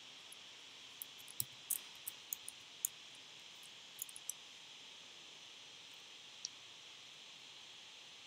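Computer keyboard keystrokes typing a short word: about a dozen light, sharp clicks over some three seconds, then one more a couple of seconds later, over a steady faint hiss.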